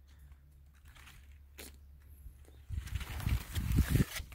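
A faint low hum, then from about three seconds in, rustling and bumping of grapevine leaves and twigs handled close to the microphone, ending in a sharp click.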